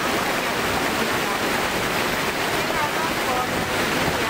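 Steady rushing of a splashing water fountain close to the microphone, with a woman's voice speaking faintly underneath it.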